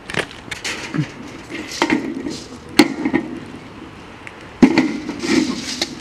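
Handheld rustling and handling noise broken by a few sharp knocks, the loudest about three seconds and four and a half seconds in.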